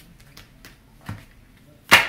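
Tarot cards handled and dealt onto the table: a few light card clicks, a soft tap about a second in, and one sharp slap of cards near the end, the loudest sound.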